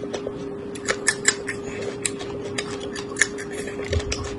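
Raw red chili pepper being bitten and chewed: rapid, irregular crisp crunches and crackles over a steady hum.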